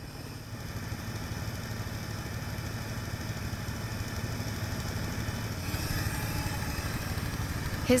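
A small petrol engine on a wooden river boat idling steadily, a low even hum, with a rising hiss joining it near the end.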